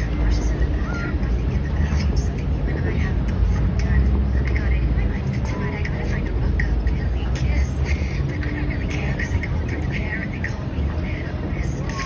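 A crowd of onlookers talking among themselves, no one voice standing out, over a steady low rumble of outdoor city noise.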